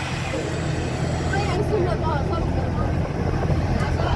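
Steady low drone of a moving bus's engine and road noise heard from inside the cabin, with passengers' voices over it.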